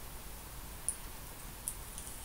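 A man drinking from an aluminium energy-drink can, quiet apart from two faint clicks a little under a second apart.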